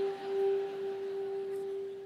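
Background music: one sustained keyboard note held steadily, with a fainter higher overtone.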